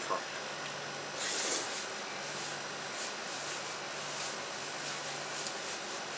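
A person slurping jajangmyeon noodles: one short hissing slurp about a second in, with faint soft sounds of eating after it. A steady low hum runs underneath.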